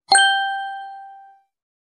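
A single bright bell-like ding sound effect, struck once and ringing out as it fades over about a second and a half.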